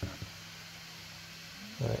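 Quiet room tone: a faint steady low hum and hiss, with one faint tick just after the start. A man's voice comes back near the end.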